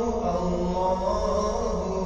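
Background nasheed: chanted vocal music in long, slowly wavering held notes over a low steady hum.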